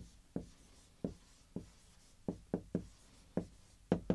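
Marker writing a word on a whiteboard: a string of about nine short, separate pen strokes and taps.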